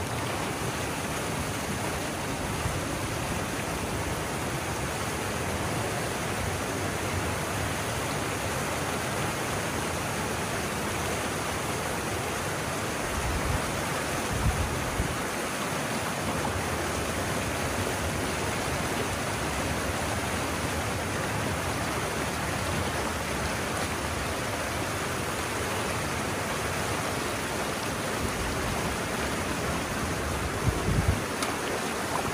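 Water rushing steadily through a freshly breached beaver dam as the pond drains and cascades down a narrow channel. A few brief low thumps come about halfway through.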